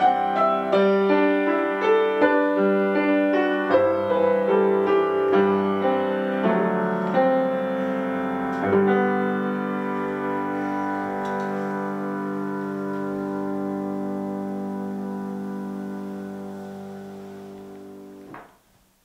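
Grand piano playing a phrase of notes, then a closing chord struck about nine seconds in and left to ring, fading slowly as the piece ends.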